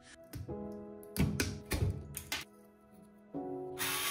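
Background music with a few sharp metallic clicks and taps from a screwdriver working on an alternator's aluminium end housing while its diode rectifier is unscrewed, then a short hiss near the end.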